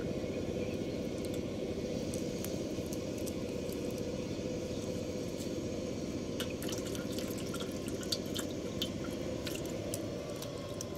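Small live fish flapping and splashing in shallow water in a steel plate, with scattered drips and wet ticks that come thicker in the second half, over a steady low hum.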